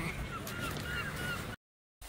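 Several short, distant bird calls over a low outdoor rumble, cut off abruptly into silence shortly before the end.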